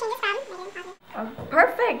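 Speech only: a high-pitched voice talking, cut off suddenly about halfway through, then more talking.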